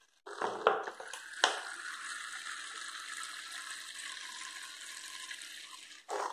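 Alcohol vinegar pouring from a plastic bottle into a plastic measuring cup, a steady splashing trickle, with a few light knocks of plastic in the first second and a half.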